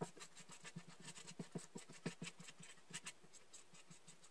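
Black Sharpie marker tip rubbing over the plastic boot of a blow-mold Santa as it is colored in. It makes a faint, irregular scratching of quick short strokes, several a second.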